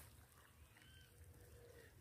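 Near silence: faint outdoor background, with a faint high call about halfway through.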